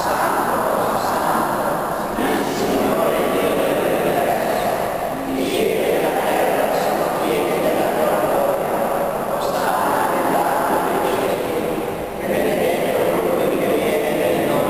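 Voices reciting a Mass prayer aloud in a reverberant church, in phrases of about two to four seconds with short breaks between them.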